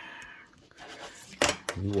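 Paper scratch-off lottery ticket being handled and moved off the mat: a soft papery rustle, then two sharp taps about a second and a half in.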